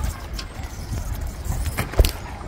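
Wind rumbling on a phone microphone, with a few sharp knocks and rattles; the loudest knock comes at the very end.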